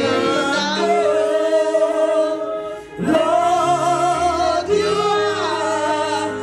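A woman sings a gospel praise-and-worship song into a microphone, holding long, gliding notes over sustained low instrumental notes, with a short break for breath about halfway through.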